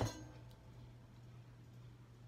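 A soldering iron being lifted from its stand: one faint click about half a second in, over a steady low hum in a quiet room.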